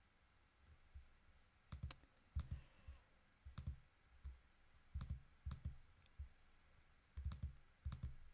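Faint computer mouse clicks, a dozen or so scattered through a few seconds, several of them in quick pairs like double-clicks.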